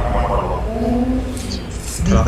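A person's voice, speaking and then holding one drawn-out sound for about a second, over a low background rumble.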